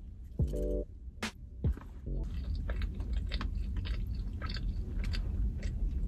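Close-up mouth sounds of a person biting and chewing a veggie burger: a run of small wet clicks and crackles that sets in about two seconds in, under background music.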